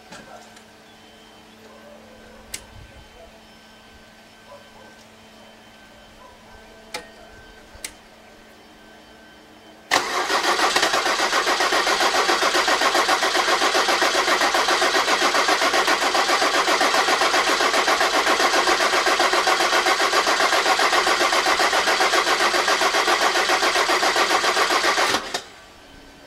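BMW 324d's M21 2.4-litre six-cylinder diesel, intake manifold removed, being cranked on the starter motor for about fifteen seconds without firing: a loud, fast, even churning that starts about ten seconds in and cuts off suddenly. It does not catch because the fuel system is full of air and no diesel is reaching the freshly rebuilt Bosch rotary injection pump. Before the cranking there are only a few faint clicks.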